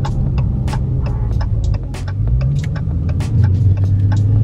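Low engine rumble heard from inside the cabin of a Dodge Challenger Scat Pack with its 392 (6.4-litre) HEMI V8, cruising on a town street. The pitch rises briefly about halfway through and the rumble grows louder near the end, with frequent sharp ticks over it.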